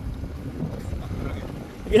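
Low rumbling wind buffeting the microphone, an even noise with no distinct tones.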